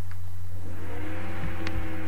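A steady low hum throughout, joined about half a second in by a steady whirring, motor-like sound that rises slightly in pitch as it starts. There is a single short click near the end.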